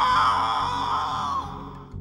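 A person's long, drawn-out scream of "No!", fading out near the end, over background music.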